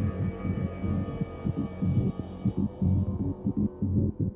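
Downtempo psychill electronic music: a quick, pulsing low bass pattern under sustained synth pads. The higher pad tones thin out about two-thirds of the way through.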